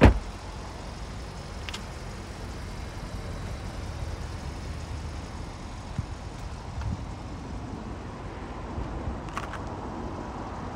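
A Vauxhall Mokka's rear passenger door shut with one sharp thud right at the start. After it comes a steady low outdoor rumble with a few faint clicks.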